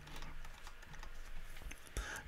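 Faint, irregular light clicks over low room noise.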